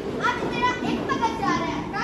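Several children's high voices talking over one another, an indistinct chatter of a crowd of schoolchildren.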